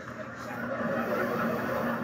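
Theatre audience laughing in a steady wash, heard through a television's speaker.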